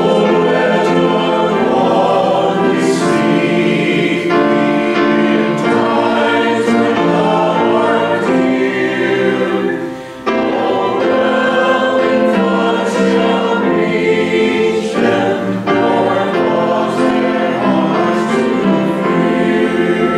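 Church congregation singing a hymn together, with a short break about halfway through before the singing resumes.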